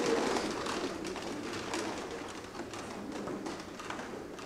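Congregation sitting down in rows of chairs after standing, with rustling, shuffling and chairs knocking and creaking, dying away.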